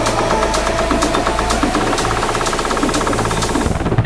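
Instrumental build in a deep house remix: a fast, evenly repeating pulse over a held bass, with no vocals. The build drops away just before the end, where a spaced, pulsing beat takes over.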